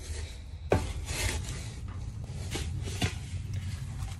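Dry chopped lucerne (alfalfa chaff) being scooped and rustled, with a sharp knock under a second in and two lighter knocks near the end, over a steady low rumble.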